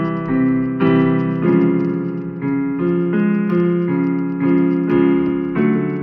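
Keyboard in a piano voice playing a vocal warm-up pattern: a run of notes and chords that step up and down in pitch, about two a second.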